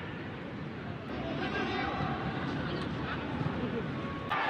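Football stadium ambience picked up by the pitch-side microphones: a steady din of distant voices and shouts during open play.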